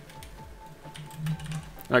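Computer keyboard keys clicking in scattered keystrokes as a short text entry is typed, over soft background music.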